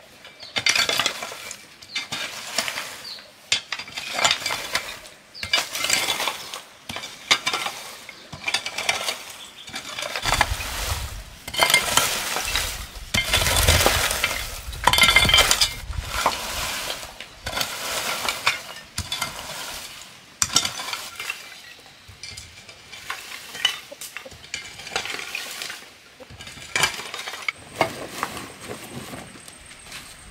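A metal hoe scraping and raking dry wood chips, bark and twigs across packed dirt, in repeated strokes about one a second.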